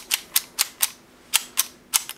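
Gas blowback airsoft pistol with a Tokyo Marui Hi-Capa-style lower, its gas spent, having its action worked by hand: a run of about eight short, sharp metal clicks, unevenly spaced.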